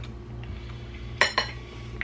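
Two quick clinks of cutlery against a plate a little over a second in, over a low steady hum.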